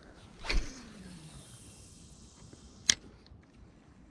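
A cast with a spinning rod: a swish as the rod whips and the line runs off the spool, its whir falling steadily in pitch over about a second as the lure flies out. About three seconds in, a sharp click as the reel's bail snaps shut.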